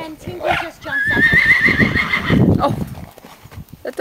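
Liver chestnut stallion whinnying once, about a second in: a loud, quavering call of about a second and a half that rises slightly in pitch, over the thud of his hooves on the dirt.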